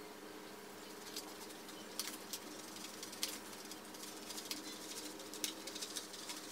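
Scissors cutting plastic window privacy film, giving a few faint, irregular snips and crinkles of the film over a low steady hum.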